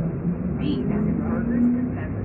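Automated train announcement over the car's PA speaker, muffled and tinny: "…Concourse B, B as in burgers and beverages." A steady low rumble from the moving train runs underneath.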